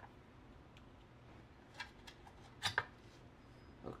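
Quiet room tone with a few soft clicks of hands handling a plastic radar-gun housing and its screw-on battery cap: one a little under two seconds in, and a pair near three seconds.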